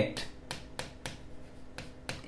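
Light, sharp clicks of a pen tip striking a whiteboard surface as letters are written, several scattered across a couple of seconds.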